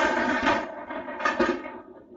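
Cardboard game box handled and turned over on a cloth-covered surface, a rustling, scraping sound that fades out in the last half second.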